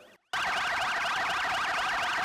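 Police car siren sounding a fast, evenly repeating rising-and-falling yelp. It starts abruptly about a third of a second in, after a brief silence. The siren is sounded to mark a minute of silence for fallen soldiers.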